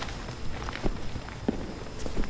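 Footsteps of men walking across an office: a series of short, sharp, irregularly spaced steps.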